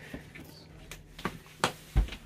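A few light clicks and knocks in a small room, over a faint steady hum.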